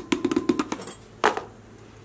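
A metal spoon and a plastic container clicking and clinking against the rim of a large glass jar as the last wood ash is tipped in and stirring begins: a quick run of light taps in the first second, then one sharper clink.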